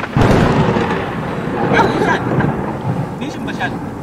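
A thunderclap comes in suddenly and loud just after the start, then dies away slowly over the following seconds.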